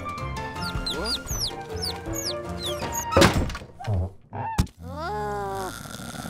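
Cartoon sound effects over background music: a run of short falling whistle-like notes, then a loud thunk about three seconds in, followed by a click and a falling pitched tone.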